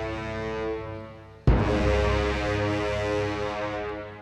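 Dramatic background music: a sustained chord that fades away, then a sudden hit about one and a half seconds in that opens a new sustained chord, which fades near the end.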